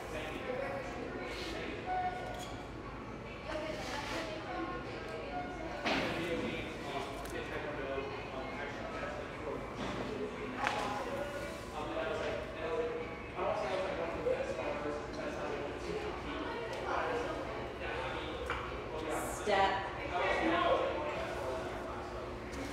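Indistinct voices murmuring throughout, too unclear to make out words, with a few sharp knocks of small wooden blocks against a concrete floor.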